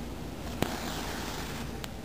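Handling noise from yarn and crocheted work being worked close to the microphone: a sharp click about half a second in, then about a second of rustling and a faint click near the end, over a steady background hiss.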